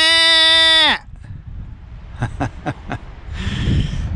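A goat bleating: one loud call about a second long, held at a steady pitch and dropping away at the end. A few faint clicks and a soft rustle follow.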